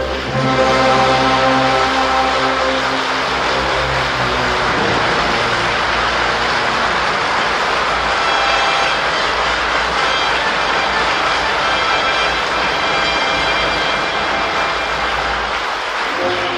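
Opera-house audience applauding, a dense steady clapping that follows the end of an orchestral passage, with faint orchestral notes showing through it.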